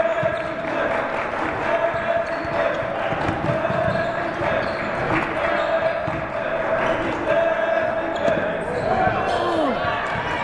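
Basketball dribbling and bouncing on a hardwood gym floor during play, with indistinct voices of players and spectators, all echoing in a large gym hall.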